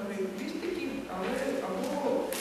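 Only speech: a woman giving a talk into a microphone.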